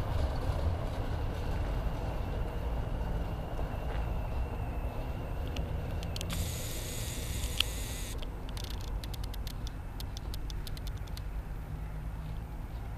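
Low, steady rumble of distant street traffic as a city bus and a van drive away. About six seconds in there is a hiss lasting roughly two seconds, followed by a run of faint clicks.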